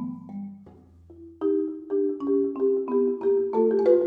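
Solo marimba played with yarn mallets. A phrase rings and dies down to a soft pause about a second in, then a new run of evenly spaced notes starts and builds in loudness toward the end.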